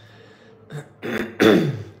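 A man clearing his throat: a short catch a little under a second in, then a louder clear in two pushes near the end, the last one the loudest.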